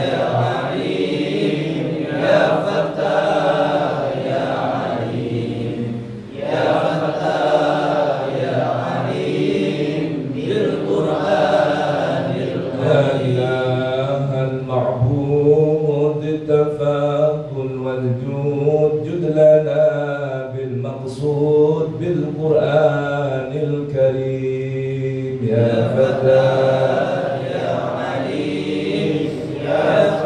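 A group of men chanting an Arabic prayer together, slow and melodic with long drawn-out notes and a short pause for breath about six seconds in.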